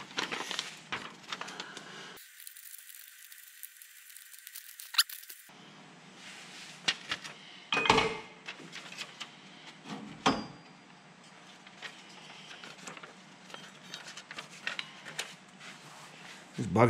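Quiet handling sounds as a paper pattern is rustled and fitted around a metal tube, with scattered light clicks and clinks and three sharper clicks through the middle.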